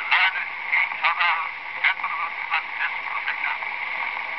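An 1894 brown wax phonograph cylinder playing back a man's spoken message. The voice is thin and tinny, with no bass, over a steady surface hiss.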